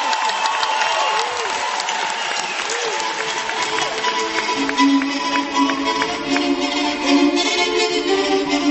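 Gypsy-style music: two violins playing sliding, improvised-sounding phrases over strummed guitars, with audience applause through the first part.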